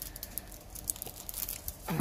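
Sheets of pattern paper rustling and crinkling as they are handled and set aside, a scatter of short, crisp rustles.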